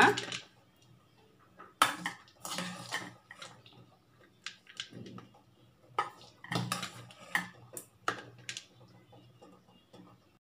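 A steel perforated ladle clinking and scraping on a stainless steel plate as fried mint leaves, green chillies and coconut pieces are tipped out and spread, in irregular bursts of clatter with quieter gaps between.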